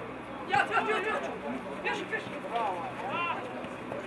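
Voices at a football match: several shouted calls over a background of scattered chatter, with a run of raised, drawn-out calls about two and a half to three seconds in.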